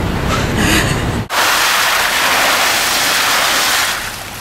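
Water poured from a large cooler into a front-end loader's steel bucket: a loud, steady rush of splashing water that starts suddenly about a second in and stops suddenly near the end.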